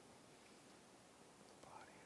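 Near silence: quiet room tone of a church, with a faint murmur of voices near the end.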